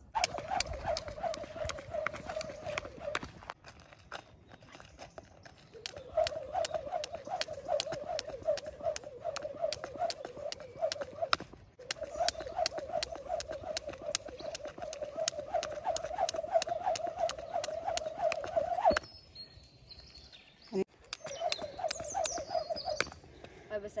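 A thin jump rope whirring through the air and slapping the pavement in a quick, even rhythm as a child skips. It comes in several bouts with short breaks between them.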